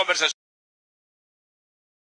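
A male Spanish-speaking sports commentator talking, cut off mid-sentence about a third of a second in, then dead digital silence.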